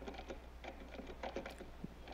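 Typing on a keyboard: an irregular run of quiet key clicks, several a second, over a steady low hum.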